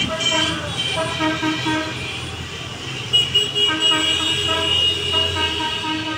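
Car horns honking in passing traffic: a run of quick short toots for about the first two seconds, then longer held honks through the second half.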